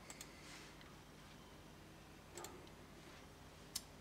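Near silence broken by a few faint, sharp clicks of a computer mouse: a pair right at the start, one about halfway through and a louder one near the end.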